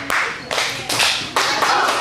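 Hands clapping in a short rhythmic pattern, a few sharp claps about half a second apart, with children joining in: a classroom call-and-response clap that brings the children to attention.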